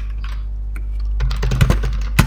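Typing on a computer keyboard: a quick run of keystrokes, mostly in the second half, over a steady low hum.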